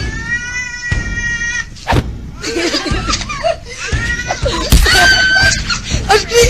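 High-pitched shrieking and laughter, with a sharp knock about two seconds in and another thud near the five-second mark.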